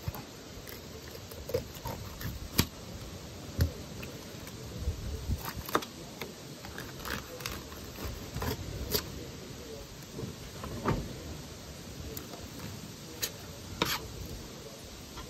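A knife filleting a walleye on a plastic cutting board: irregular sharp knocks and clicks as the blade and fish hit the board, over soft scraping and cutting sounds.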